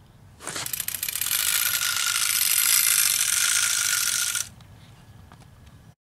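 A loud, rapid run of fine mechanical clicks, a ratcheting sound that starts about half a second in and cuts off suddenly about four and a half seconds in.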